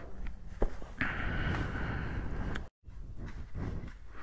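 Footsteps and shuffling as a person gets up and moves, with rubbing and handling noise on a body-worn camera and a few sharp clicks. The sound drops out completely for a moment about two and a half seconds in.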